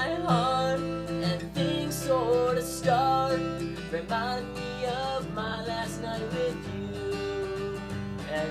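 A man singing while strumming an acoustic guitar.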